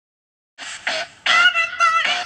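Dead silence for about half a second, then a recorded song with a singing voice cuts in suddenly.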